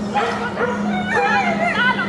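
Excited dog barking and yipping: rapid short high barks, several a second, over a steady low hum.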